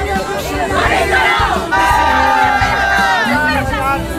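A crowd shouting and cheering together over music with a steady low beat, with drawn-out shouts in the middle.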